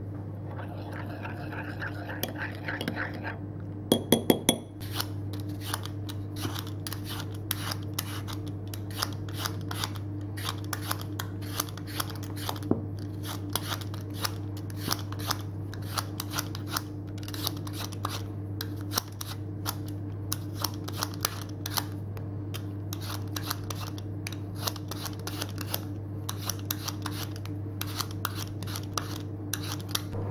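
A hand vegetable peeler scraping the skin off a potato in quick repeated strokes, a few a second, over a steady low hum. About four seconds in, a spoon clinks against a bowl.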